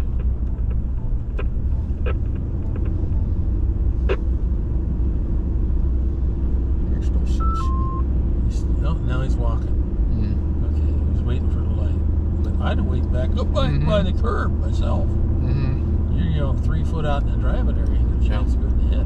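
Steady low rumble of engine and road noise inside a moving vehicle's cabin. About halfway through there is a short two-note beep, a higher note then a lower one.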